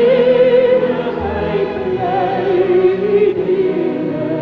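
Choir and orchestra performing, with a held sung melody wavering in vibrato over sustained orchestral chords.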